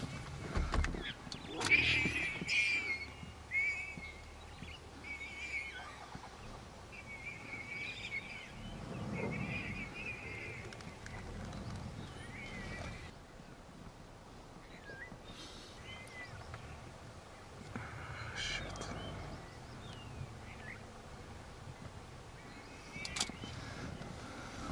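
Lions growling as they crowd and feed on a warthog kill. A run of short, high, wavering squealing calls comes over the first ten or so seconds, and more low growls come later.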